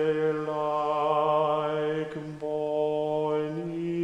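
A man singing solo and unaccompanied in long, held notes of a slow melody, with a short break for breath about halfway and the pitch rising near the end.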